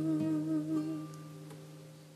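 A woman's voice holds the song's last note with a wavering vibrato over a nylon-string classical guitar chord ringing out. The voice stops about a second in, and the guitar chord keeps fading.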